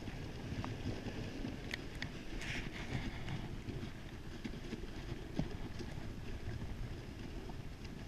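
Dog sled gliding over packed snow behind a Samoyed team: a steady rushing noise of the runners with scattered small clicks and knocks, and wind on the microphone.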